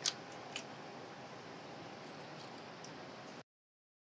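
Metal clicks from a chain strainer and its chain being worked back along a high-tensile fence wire: one sharp click just after the start, a softer one half a second later, then a few faint ticks over steady low hiss. The sound cuts off about three and a half seconds in.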